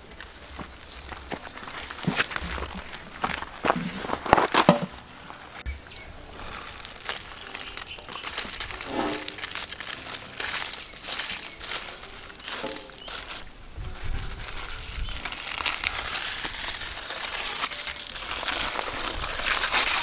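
Irregular crinkling and crunching of the baked chicken's wrapping being pulled open by hand, with a few louder cracks about four seconds in.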